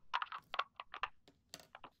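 A string of light, irregular plastic clicks as an orange plastic medicine bottle, its bottom cut off and a cut-down disc fitted inside, is handled and twisted in the hands.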